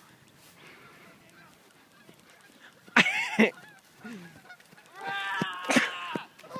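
Canada geese honking as they are chased and take flight. Quiet for the first three seconds, then a loud honk about three seconds in, a shorter one just after, and a string of loud honks near the end.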